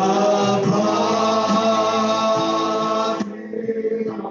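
Men singing a long held note together into microphones, with Yamaha electronic keyboard accompaniment. The sustained chord cuts off about three seconds in, leaving softer singing and playing.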